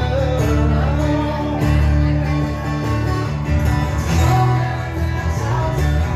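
Steel-string acoustic guitar strummed in steady chords, with a man singing over it.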